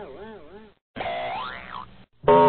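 Cartoon 'boing' sound effects: a springy tone bouncing up and down in quick repeated arcs, fading out within the first second. After a short gap a second comic effect slides up in pitch and back down.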